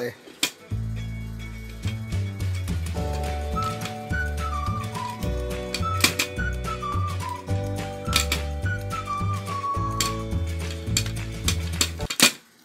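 Background music: steady bass notes and held chords under a whistle-like melody that falls in short steps several times over, with a few sharp clicks.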